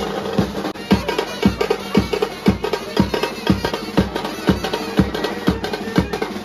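A street band's large bass drums beaten with mallets and snare drums played with sticks, keeping a driving rhythm with about two heavy beats a second under quick snare rolls.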